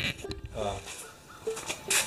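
A man's voice saying a hesitant 'uh', with a few light clicks and knocks of the camera being handled and set down on the concrete floor.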